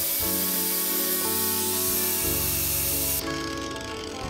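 Corded angle grinder with a sanding disc smoothing the hard ulin wood of a carved tray: a steady high hiss that cuts off about three seconds in, with background music underneath.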